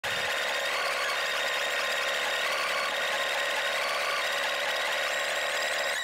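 Steady, loud hiss of static-like noise, thin and bright with no low end and a few faint steady tones inside it, opening a rock song's recording.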